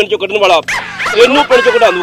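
A dog whimpering and yipping in a run of high cries that rise and fall in pitch, starting under a second in, after a few words from a man.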